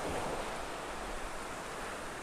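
Small Gulf of Mexico waves breaking and washing up on a sandy shore, a steady rush of surf.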